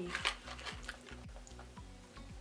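A few faint crunches from a chalky sugar candy stick being bitten and chewed, under quiet background music.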